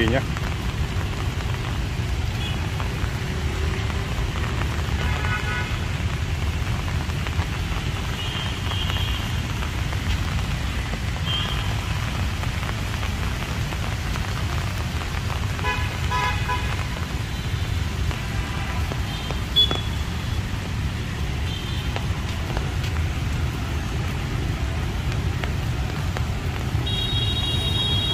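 Steady low rumble of city street traffic, mostly motorbikes and cars on wet roads, with several short horn toots scattered through it.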